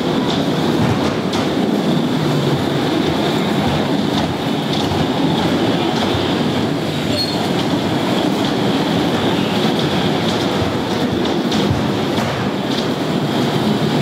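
Pole-fed electric bumper cars running across the rink floor: a steady rumbling with scattered clicks and knocks.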